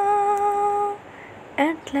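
A solo female voice holds one steady, unwavering note for about a second, then pauses briefly. It comes back near the end with a new sung phrase that rises in pitch. There is no accompaniment.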